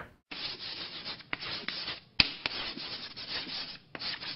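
Scratchy rubbing noise in uneven strokes, like a pen scribbling, with a few sharp clicks, the loudest about two seconds in; an added sound effect under a logo card.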